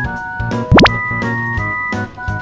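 Light background music of held, stepping notes, with a quick rising swoop sound effect about three-quarters of a second in, the loudest moment.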